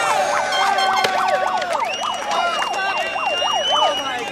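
A siren-like wail that sweeps rapidly up and down in pitch, several overlapping, about three or four times a second. A steady high whistle joins about halfway through.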